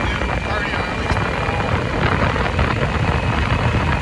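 Steady wind and road noise from a Yamaha Super Ténéré motorcycle under way, picked up by a phone mounted just behind the windshield, with a low engine rumble underneath.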